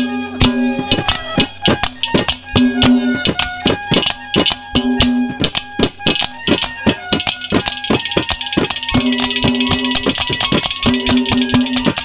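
Instrumental passage of Haryanvi ragni folk music: a harmonium holds and repeats notes over a fast, busy hand-drum rhythm. From about seven seconds in, a bright jingling shimmer joins the drums for a few seconds.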